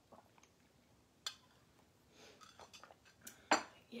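Faint sipping through a straw, then a drinking glass clinking, with a sharp knock near the end as the glass is set down on a hard surface.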